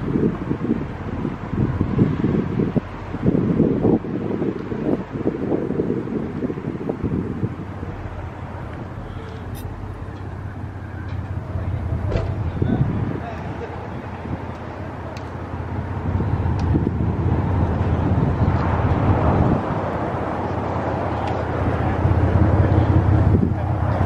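Wind buffeting the microphone in gusts for the first several seconds, then a steady low hum of vehicles idling, with indistinct voices of people around.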